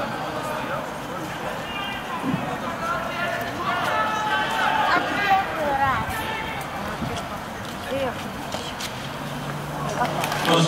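Indistinct speech from a stadium public-address commentator calling a race, heard at a distance over general outdoor stadium background noise.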